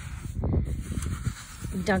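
Hands digging and scraping in damp, gritty sand: a soft, rough rustle with a brief louder scrape about half a second in.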